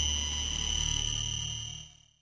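Closing sustained tone of an electronic studio-logo jingle, played through the video's audio effects: a steady high tone over a low drone, fading out near the end.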